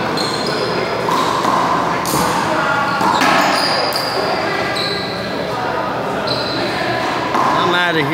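Indistinct voices echoing in a large indoor handball court, with a few sharp knocks of a ball bouncing.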